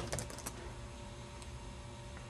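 Computer keyboard keystrokes as a word is typed: a few quick clicks that stop about half a second in, then only a faint steady hum.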